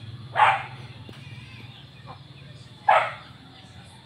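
Two short, loud animal calls, about two and a half seconds apart, over a low steady background hum.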